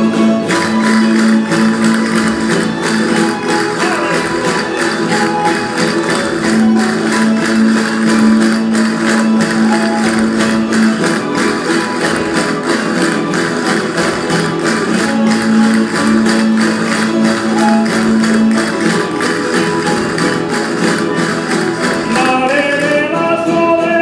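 Instrumental jota played by a rondalla of strummed guitars and other plucked string instruments, in a fast, driving rhythm. Dense clicking runs through it, typical of the dancers' castanets.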